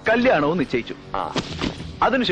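A man speaking film dialogue, the voice starting abruptly and loudly.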